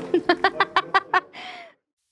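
A person laughing in a quick run of about six short bursts that trail off, followed by an abrupt cut to silence near the end.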